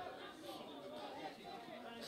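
Faint, distant chatter of voices at a football pitch: players and spectators calling out as a free kick is set up.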